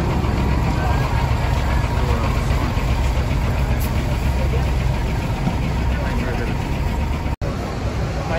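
Diesel coach engines idling, a steady low rumble, with people's voices in the background. The sound drops out for an instant near the end.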